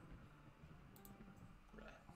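Near silence: faint room tone with a couple of faint computer mouse clicks about a second in.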